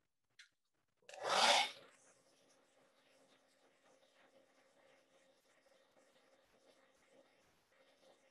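An electric blow dryer switched on about a second in, loud for under a second, then running steadily and faintly with a low hum, drying wet acrylic paint on canvas.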